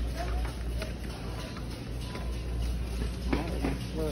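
Busy store ambience: a steady low hum with faint distant voices, and a few light knocks and rattles from a shopping cart being pushed along.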